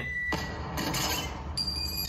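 Film soundtrack: music with fireworks bursting, and a sudden smash of window glass about a third of a second in, followed by a hissing crackle.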